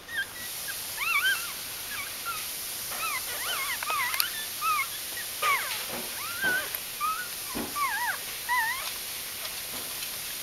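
Newborn Bichon Frisé puppies squeaking and whimpering: short, high cries that rise and fall in pitch, several in a row, stopping near the end. A steady hiss and a few soft low knocks lie under them.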